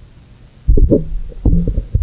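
Loud low thumps and rumbles of a microphone being handled, starting about two-thirds of a second in.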